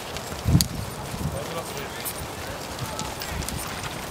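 Hoofbeats of several horses trotting on a sand arena: soft, muffled thuds and scattered clicks over a steady hiss, with one louder thump about half a second in.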